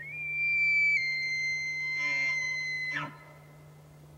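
A steady, high whistle-like tone that steps slightly down in pitch about a second in and cuts off with a click about three seconds in, over a low steady hum.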